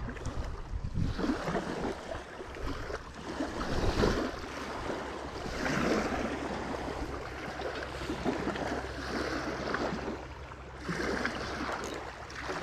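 Small lake waves lapping and washing onto a rocky shore in slow surges, over a steady low wind rumble.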